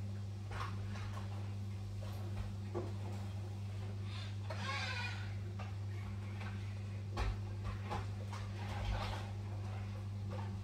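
A baby's brief high-pitched vocal sound about five seconds in, over a steady low hum, with scattered light knocks and clicks of handling around a high chair.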